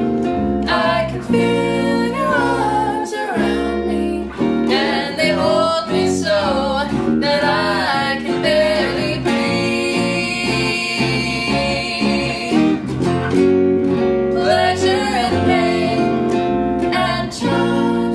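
A live band playing a song: a woman's lead vocal over a strummed hollow-body electric guitar and an electric bass, with a long held note about halfway through.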